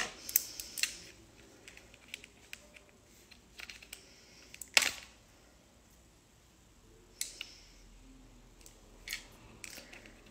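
Scattered small clicks and taps of long acrylic nails and fingers handling a curling wand, the loudest about five seconds in.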